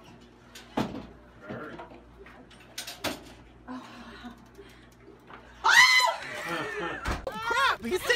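A few light knocks, then about six seconds in a loud, high-pitched human shriek, followed by short rising-and-falling vocal cries.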